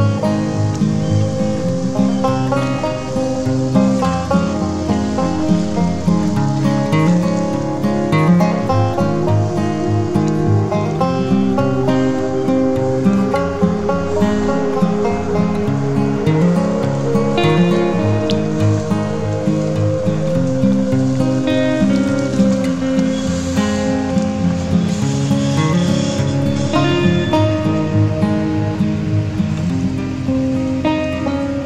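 Background music carried by plucked strings, with a steady run of changing notes.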